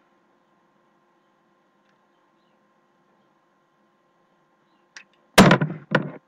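Near silence with a faint steady hum for about five seconds, then, about five seconds in, a sudden short loud vocal sound from a man, a brief voiced noise rather than words.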